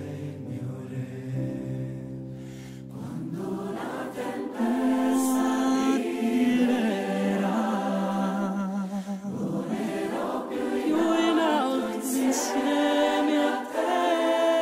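Music: a soft, sustained accompaniment chord, then a choir singing in Italian from about three and a half seconds in.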